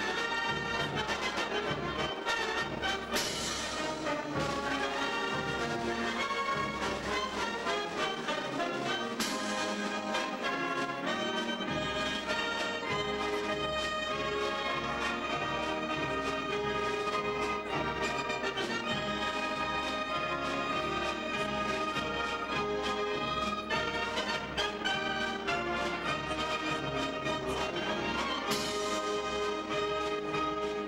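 A concert wind band playing live: saxophones, brass and tubas together in a continuous piece, with louder, brighter full-band moments about three and nine seconds in and again near the end.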